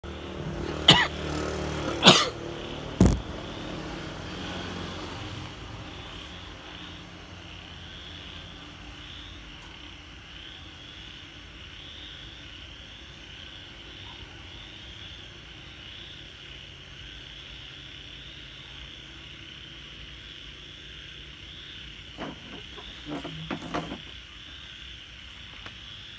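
Three sharp knocks of the camera being handled and set in place in the first three seconds. Under them and throughout is a steady night chorus, a high trill that pulses evenly. Near the end come a few lighter knocks of a plastic chair being moved on the tiles.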